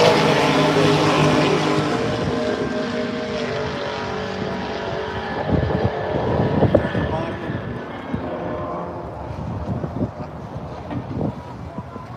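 A car engine running nearby, loud at first and fading away over the first eight seconds or so. A few knocks and clunks come midway and near the end from hands and tools working on the car's trunk lid.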